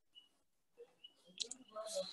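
Faint light clicks of a stylus tip tapping on a tablet's glass screen while letters are written, a few separate ticks with a sharper one about a second and a half in.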